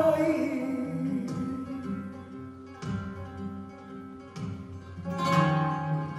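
Flamenco guitar playing soleá: melodic runs broken by several sharp accents. A woman's sung line trails off at the start.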